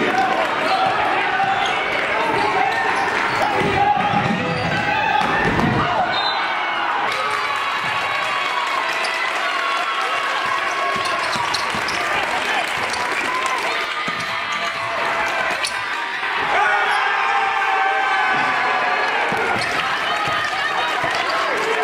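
Live game sound of basketball play: a ball bouncing on a gym's hardwood floor amid the voices of players and spectators.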